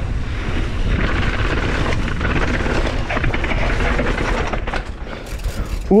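Mountain bike riding fast down a cobblestone path: tyre rumble and rattling of the bike, with wind buffeting the microphone. It eases off near the end.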